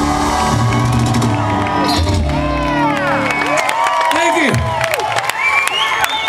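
A live country-rock band holds a final chord that ends about three and a half seconds in. The audience then cheers, whoops and claps.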